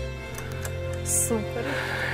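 The end of a slow saxophone piece played over a backing track. The saxophone's last held note stops within the first half-second, while the backing track's low chord rings on. A short breathy hiss comes about a second in.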